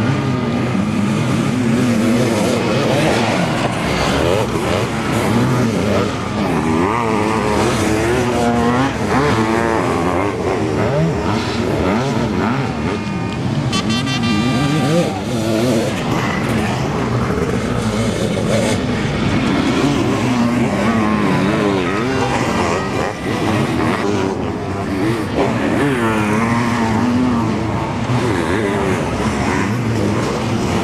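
Sidecar motocross outfits' engines racing on a dirt track, revving up and down again and again as the outfits accelerate, brake and pass, with one sharp high rev about halfway through.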